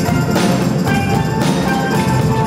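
Steel drum band playing: many steel pans ring out notes and chords over a steady percussion beat.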